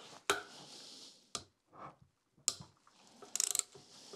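Ratchet wrench with a 10 mm socket loosening a cylinder-head bolt: a few separate metal clicks as the tool is set and turned, then a quick run of ratchet clicks near the end.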